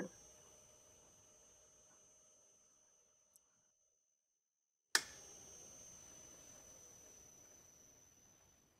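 Faint hum and high steady whine of a small AC motor run by an LS variable-frequency drive. About five seconds in, after a moment of dead silence, there is a sharp click; then the motor's tone slowly falls as the drive winds its speed down.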